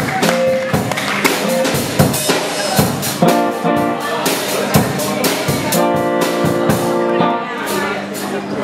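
Live rock band playing on stage: drum kit strikes throughout, joined about three seconds in by sustained, ringing electric guitar and bass chords.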